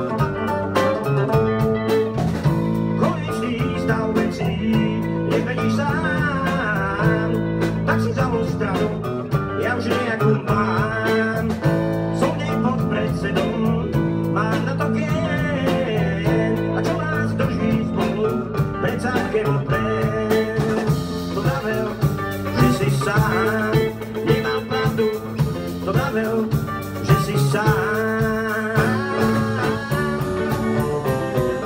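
Live band playing a song: electric guitar, acoustic guitar and bass guitar over a drum kit, with a man singing.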